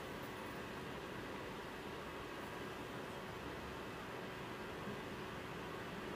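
Steady low hiss of room tone with a faint steady hum underneath, and no distinct events.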